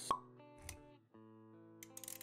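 Intro music of soft held notes, with a sharp pop just after the start that is the loudest moment, a softer low thud a little over half a second in, and a brief gap about a second in before the notes resume.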